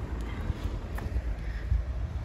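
Wind rumbling on the microphone, a low, uneven buffeting, with a faint click about halfway through.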